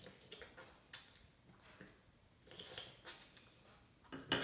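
Quiet drinking from a glass: faint sips and swallows with a few small clicks, the sharpest about a second in.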